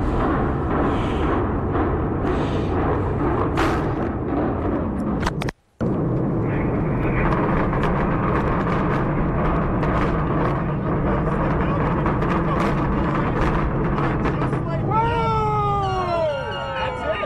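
Implosion of a high-rise hotel tower: sharp bangs from the demolition charges and a continuous rumble as the tower comes down, over crowd noise, with the sound cutting out briefly about five seconds in. Near the end, voices whoop and cheer.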